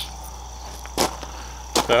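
Crickets chirping steadily, with one sharp snap about halfway through.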